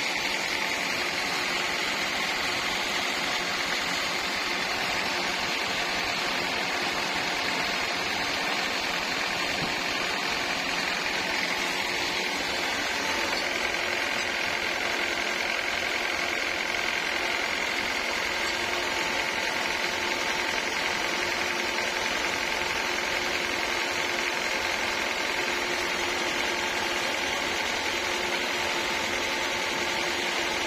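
Band sawmill running steadily: a continuous mechanical drone with several held, even tones and no change in load.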